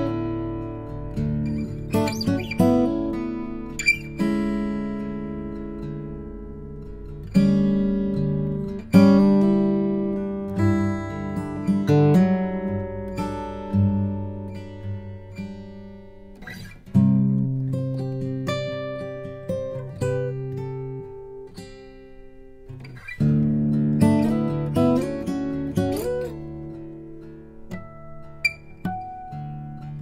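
Eastman E10 OM orchestra-model acoustic guitar played solo, fingerpicked: chords and single notes, with several strong chords struck every few seconds and left to ring out and fade.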